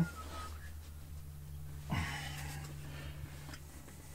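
Handling noise from 19 mm plastic irrigation pipe fittings being pushed together: one short rustling knock about two seconds in, over a steady low hum.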